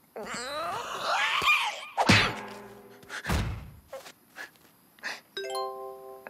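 Cartoon sound track: wordless character vocalizing with sliding pitch, then two thuds a little over a second apart, the first followed by a short ringing tone. A held musical note comes in near the end.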